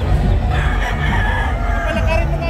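A rooster crowing once: a single long call starting about half a second in and lasting over a second, over a steady low background rumble.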